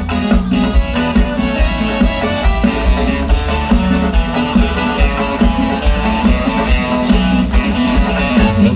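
Live sertanejo band playing an instrumental passage through the PA: accordion and strummed guitars with bass and drums keeping a steady beat.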